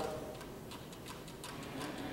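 A pause in a man's preaching: his voice dies away in the room's reverberation, leaving faint, quick, regular ticking.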